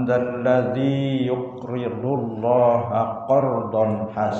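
A man's voice chanting a Quran verse in Arabic in the melodic recitation style, with long held notes that slide from pitch to pitch.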